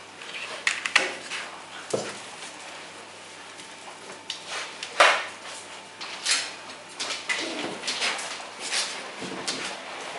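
Bear cubs scrabbling and clambering at a door and a fridge on a tiled floor: an irregular run of sharp knocks, scrapes and clatter, the loudest knock about five seconds in.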